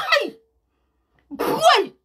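A woman's two short wordless vocal outbursts: a falling-pitched exclamation at the very start, and a second cry about a second and a half in.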